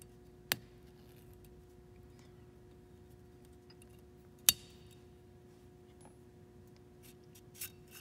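Sharp metal clicks from the small parts at the back of a Springfield Hellcat pistol slide as the striker retainer plate is worked off: a faint click about half a second in, a loud one about four and a half seconds in, and a few light clicks near the end.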